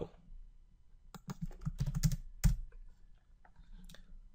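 Computer keyboard keystrokes while code is edited: a quick run of about a dozen key presses starting about a second in, then one louder keystroke near the middle and a few faint taps after it.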